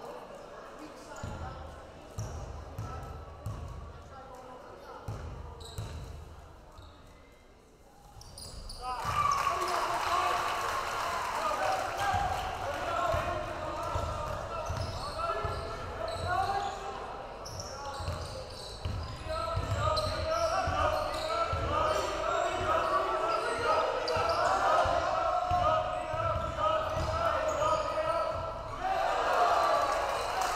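Basketball bouncing on a hardwood gym floor in repeated low thuds, with the voices of a crowd in a large hall. The crowd noise swells loud about nine seconds in and stays up.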